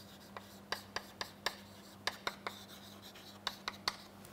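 Chalk writing on a chalkboard: a quiet run of short, irregular taps and scratches as a line of words is written.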